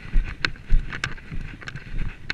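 A horse's hoofbeats on grass at a quick, even stride, with low thuds just under twice a second and sharp clicks between them, against wind noise on the microphone.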